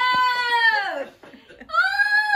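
A woman's high-pitched, drawn-out squeal of surprised joy that falls in pitch and breaks off about a second in, followed by a second squeal starting near the end.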